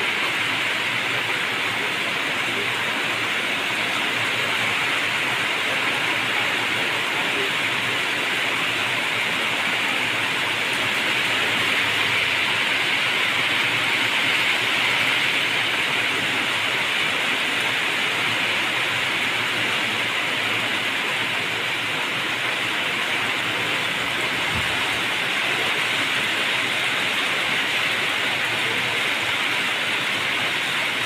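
Rain falling steadily: an even hiss that neither builds nor fades.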